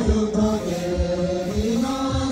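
Tibetan gorshey circle-dance song: voices singing long held notes in a chant-like melody over a low thump about every half second.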